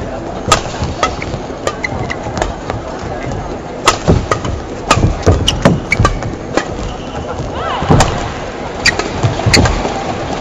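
Badminton rally: rackets striking the shuttlecock in a run of sharp, irregular hits, with footwork on the court mat and a steady arena crowd murmur underneath.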